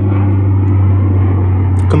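A steady low hum with a fainter even hiss above it, unchanging throughout.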